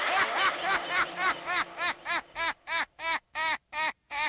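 High-pitched laughter: a run of short 'ha' notes, about three a second, that thin out into separate notes with clear gaps between them over the second half.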